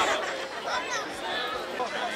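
Chatter of a waiting crowd: several people talking at once, no single voice standing out.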